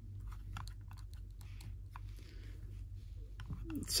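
Faint, scattered small plastic clicks and rustles as a plastic action figure and its bow are handled and posed.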